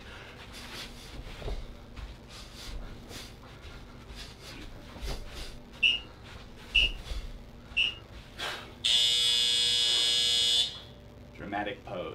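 Workout interval timer sounding the end of a boxing round: three short high beeps about a second apart, then a loud buzzer held for nearly two seconds. Under it, faint thuds of bare feet bouncing and kicking on a turf mat.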